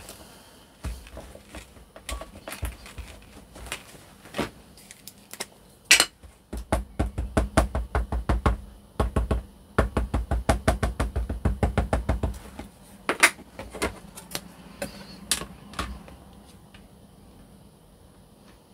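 An ink pad dabbed over and over onto a stamp on a stamping platform: a fast, even run of soft taps, about four or five a second, for several seconds in the middle. Scattered light clicks and rubs come before it, and a few separate sharp clicks and knocks follow.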